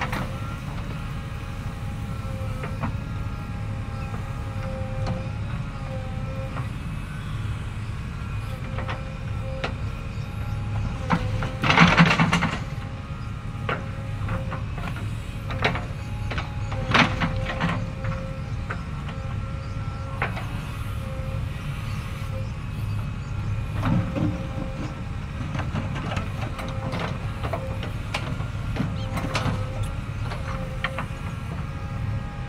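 JCB 3DX backhoe loader's diesel engine running steadily under load while the backhoe arm digs, with steady tones that waver as the arm works. A loud clatter of the bucket against the ground comes about twelve seconds in, with lighter knocks a few seconds later and again near the middle of the second half.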